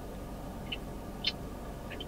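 Quiet steady low hum of car-cabin background, with two faint short ticks in the middle.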